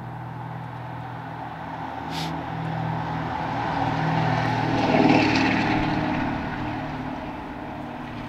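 A distant engine passing by: a low drone swells to its loudest about five seconds in and fades again.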